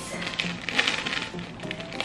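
Small plastic seasoning sachet crinkling in the hands and being torn open, a dense crackle peaking about a second in.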